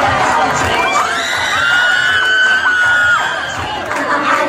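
A crowd of spectators cheering and shouting over loud dance music. A long high-pitched held note rises out of the mix about halfway through.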